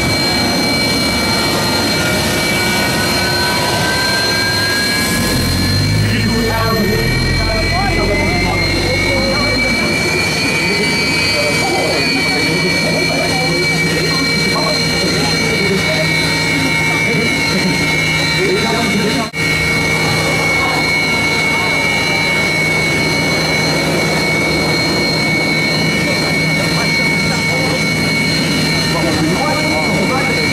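Su-30MKM's twin AL-31FP turbofan engines running on the ground with a steady high whine; over the first ten seconds or so one whine rises in pitch as an engine spools up, then holds steady.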